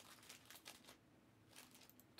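Near silence, with a few faint scattered clicks and crinkles of small handling noise.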